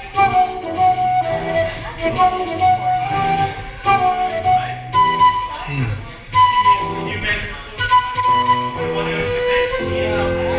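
A flute playing a melody of held notes over a chordal accompaniment with a bass line. The melody climbs higher in the second half.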